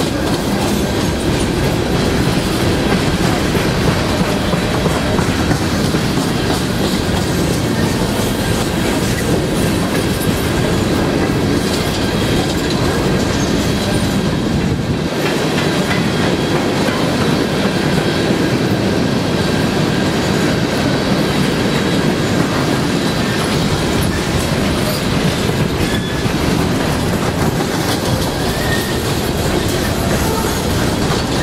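Freight train of coal hopper cars rolling past: a steady rumble and clickety-clack of steel wheels over the rail joints, with faint high wheel squeal.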